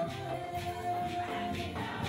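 A women's choir singing together, with one note held for about a second and a half, over a steady percussion beat.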